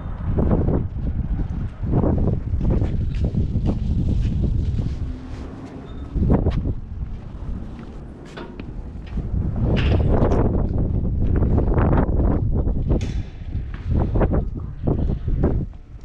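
Wind buffeting the camera's microphone in uneven gusts, a low rumbling rush that swells and drops several times.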